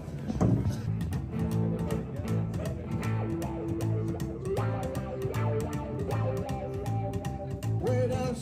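Live street music from a duo: an upright double bass plucked in a steady pulse of about two notes a second under a hollow-body electric guitar, in a country or rockabilly style.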